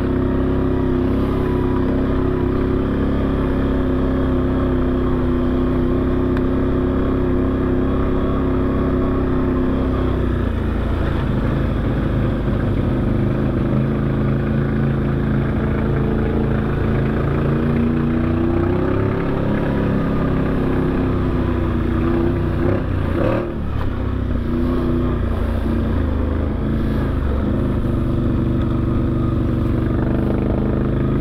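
An off-road vehicle's engine running under way, steady at first, then easing off about a third of the way in, picking up again, and dropping briefly near three-quarters of the way through before settling back to a steady run.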